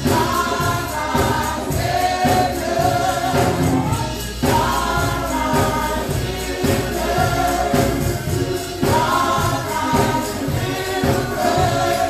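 Gospel music: a choir singing in phrases of about four seconds over a steady beat, with tambourine.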